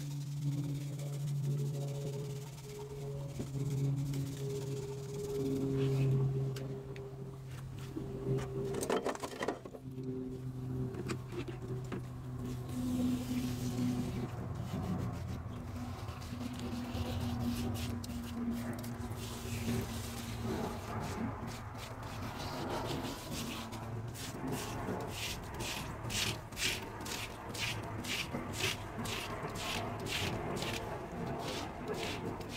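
Background music of slow, sustained tones that shift in pitch. Near the end it is joined by a steady run of rhythmic strokes, about two a second.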